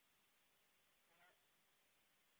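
Near silence, with one very faint, brief pitched sound about a second in.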